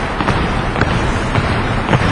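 Volleyball players landing and pushing off on a gym court during a jumping agility drill: scattered footfalls over a steady noise of movement in the gym.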